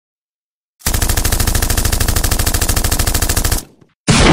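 A long burst of rapid machine-gun fire: evenly spaced shots begin about a second in and cut off abruptly shortly before the end.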